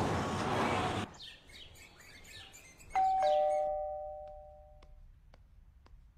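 Background music cuts off about a second in; about two seconds later a doorbell chimes ding-dong, a higher note then a lower one, ringing out for about two seconds.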